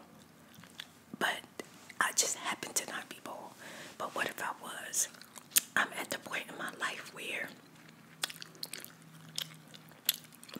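Close-miked mouth sounds: wet chewing with sharp lip and tongue clicks, the loudest about five and a half seconds in, mixed with soft, mumbled speech.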